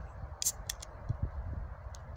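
A few light clicks and taps from an aluminium beer can being handled, three close together about half a second in and one more near the end, over a low rumble.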